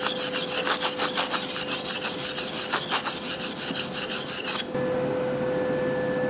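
Hand wire brush scrubbing the blackened weld bead on a freshly MIG-welded 3 mm stainless steel plate, in rapid back-and-forth scraping strokes that clean off the discolouration. The brushing stops about four and a half seconds in.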